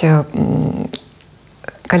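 A woman's speaking voice: the tail of a word, then a drawn-out hesitation sound, followed by about a second of quiet before she goes on speaking.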